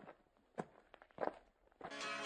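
Faint footsteps, three steps about half a second apart; guitar music comes in near the end.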